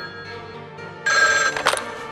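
A telephone ringing: one short, loud ring about a second in, over steady music.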